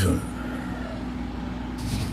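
Steady low background hum with a constant tone, from a phone-recorded live stream, in a gap between words. A short hiss comes near the end.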